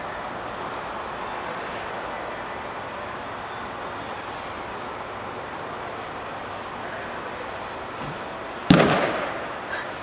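A thrown baseball popping into a catcher's leather mitt: one sharp, loud crack near the end that rings briefly, with a smaller knock about a second later, over steady background noise.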